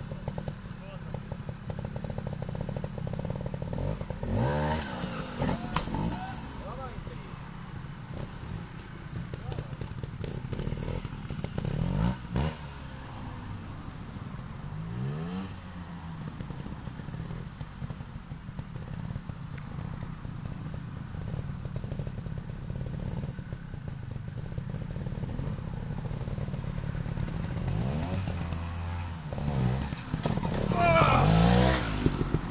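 Trials motorcycle engines idling with a steady low rumble, blipped several times with quick rising revs as riders line up on a rock obstacle.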